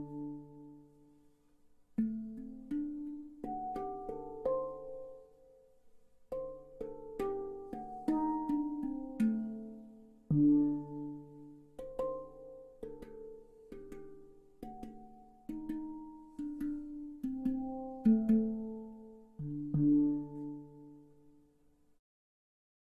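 Handpan (steel hand drum) played by hand in a slow melody: struck notes that ring and decay, with a lower note sounding now and then. It is picked up acoustically by two overhead condenser microphones.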